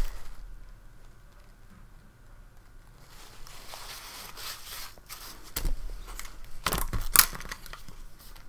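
A paper towel being handled and crumpled in the hand, crinkling in a few short bursts that are loudest near the end.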